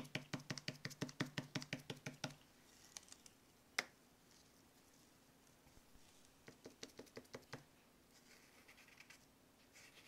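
Old paintbrush dabbed quickly against a small sheet of paper on a table, a run of light taps about eight a second that stops after about two seconds. A single sharper tap comes near four seconds, then another short run of taps around seven seconds.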